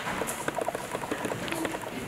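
Footsteps of hard-soled shoes on a wooden floor, a quick irregular run of light knocks and clicks.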